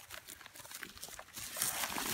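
Rustling and scraping of a wooden log being turned over on leaf litter and dirt: a scatter of small crackles that grows louder in the second half.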